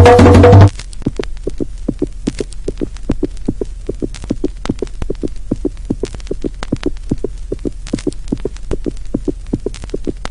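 Percussive music cuts off abruptly less than a second in, giving way to a steady low hum under a fast, even throbbing pulse, a film sound-design effect.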